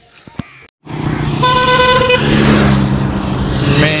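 Road traffic: a steady vehicle engine hum with road noise starts suddenly about a second in, and a vehicle horn sounds once, for just under a second, about a second and a half in.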